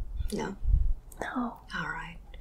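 Quiet whispered speech: a few short, faint words in three brief runs, with a dull low thump a little under a second in.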